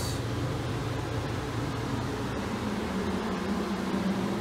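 A steady low mechanical hum with a hiss over it, even throughout, and a few faint ticks.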